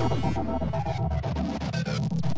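Electronic music at a breakdown: the drums and heavy bass have dropped out, leaving a steady low synth drone with faint, sparse higher tones.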